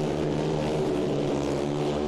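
Speedway motorcycles, 500cc four-stroke bikes with no brakes, racing round a dirt oval: a steady, sustained engine note.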